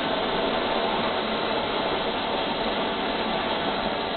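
TJT80 model jet turbine running at a steady speed: an even rushing noise that neither rises nor falls.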